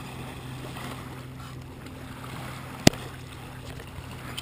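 Lake water lapping and washing around a camera sitting right at the water's surface, over a steady low hum. One sharp click a little before three seconds in.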